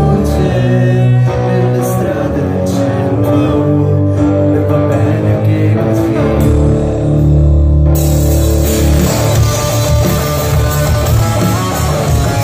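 Rock band playing live on electric guitars, bass and drums, with held, ringing guitar chords. About eight seconds in, the full band comes back in and the sound grows dense and bright.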